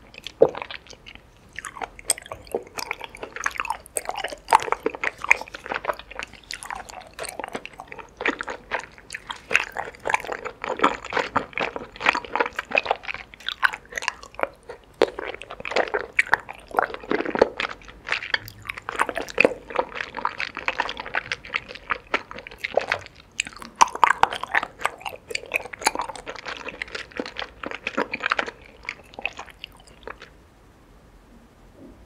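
Close-miked chewing of chewy tapioca pearls with the mouth closed: a dense, continuous run of small mouth clicks and smacks that stops right at the end.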